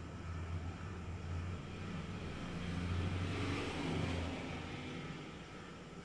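A passing road vehicle, faint: a low engine hum with a rushing noise that swells to a peak about halfway through and fades away.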